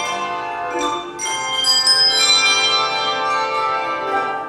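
Handbell choir playing: many bells rung together in chords, their tones ringing on between fresh strikes about one and two seconds in.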